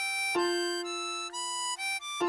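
Harmonica playing a slow melody of a few long single notes, the last a draw note on hole 8 just at the end, over a lower held backing chord tone that enters about a third of a second in.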